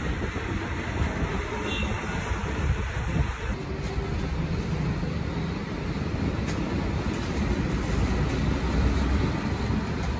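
Steady low rumble of roadside traffic and street noise.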